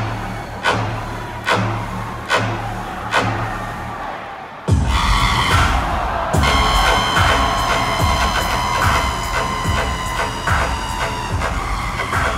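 Dubstep DJ set played loud over a concert sound system. A beat hits about every 0.8 seconds, then about four and a half seconds in the track drops into a louder, denser section with heavy bass and a fast rhythm.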